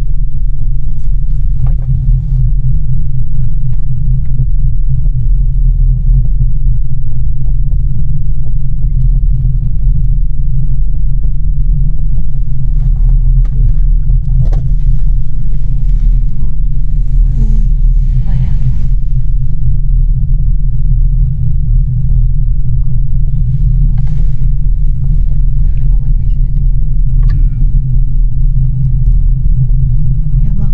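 Loud, steady low rumble inside a moving Miyajima Ropeway gondola cabin as it rides along its cable, with a few faint knocks.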